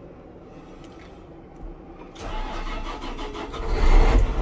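John Deere 9570RX tractor's 15-litre Cummins six-cylinder diesel, heard from inside the cab, cranking and catching about two seconds in, then picking up with a deepening low rumble as it comes up to idle.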